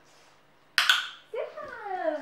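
A sudden short scuff or rustle about a second in, then a drawn-out call that falls steadily in pitch, a woman's voice praising the dog.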